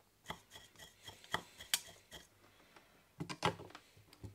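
Scattered light clicks and taps of hand tools and a circuit board being handled on a workbench, some with a faint metallic ring, with a louder cluster of knocks about three seconds in.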